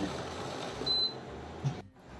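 Ginger water boiling in a steel vessel on an induction cooktop, with a steady bubbling hiss. A short, high beep sounds about a second in.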